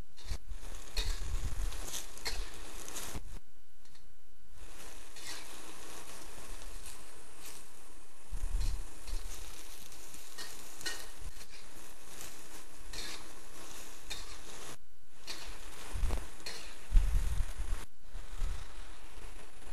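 A metal wok spatula scrapes and tosses cabbage around a wok while it sizzles over the heat. The cabbage is cooking down in a little added water. A few dull knocks of the spatula against the pan come through, the loudest near the end.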